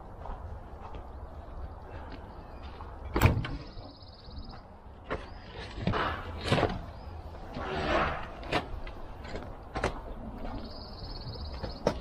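Metal compartment doors on a pickup's utility service body being opened and shut, with sharp latch clacks and knocks, the loudest about three seconds in. Tools and hardware rattle as someone rummages through the compartment around the middle.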